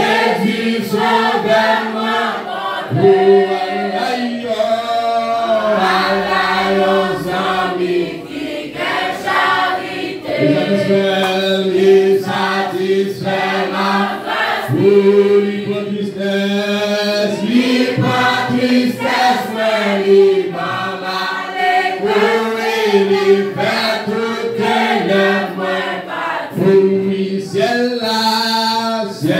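A congregation singing a hymn together in unison, several voices holding long notes, with hand claps running through the singing.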